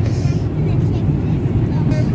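Steady low drone of an airliner cabin in flight, the engine and airflow noise heard from a passenger seat.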